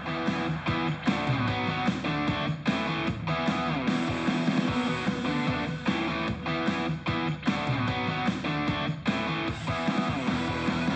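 Rock music with strummed guitars and a steady beat, played through a 3D-printed 4.75-inch underhung-motor speaker driver in a sealed box.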